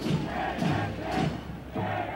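A crowd of demonstrators shouting slogans in a repeated chant, many voices together.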